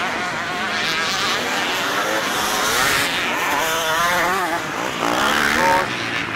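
Several enduro motorcycles' engines revving as they ride the course, overlapping, each one's pitch rising and falling with the throttle.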